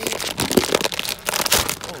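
Foil snack-chip bag crinkling as it is handled, in a dense run of crackly rustles.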